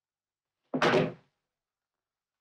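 A single sudden thud with a brief ringing tail, a little under a second in, lasting about half a second.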